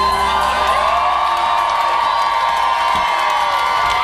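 A rock band's closing chord held and then cut off about three seconds in, with the club crowd cheering and whooping over it.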